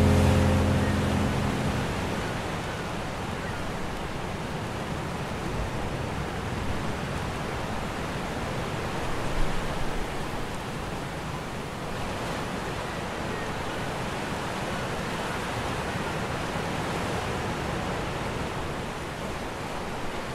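Ocean surf breaking on a beach, a steady rush of waves. The last chord of a rock song rings out and fades away over the first couple of seconds.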